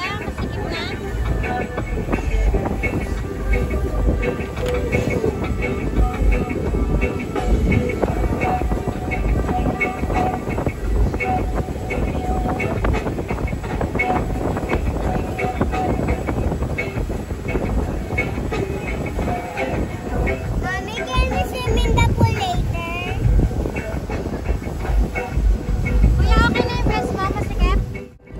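Steady low noise of a speedboat underway, its engine and wind on the microphone, under background music with repeating notes; voices come in briefly about three-quarters of the way through.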